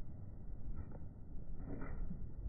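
Wind buffeting the microphone as a low, rough rumble, with a couple of faint footsteps on gravel.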